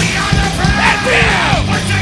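Punk rock band playing live: electric guitars, bass and drums with a steady driving beat. The singer yells over them from about half a second in, his voice sliding up and down, until near the end.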